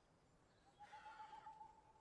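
Near silence, with a faint wavering tone lasting about a second in the middle.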